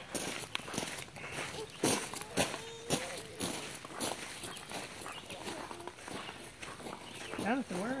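Footsteps crunching on a gravel path, irregular steps at a walking pace.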